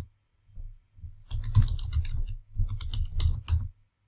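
Computer keyboard typing in two quick runs of keystrokes, with a faint low hum underneath.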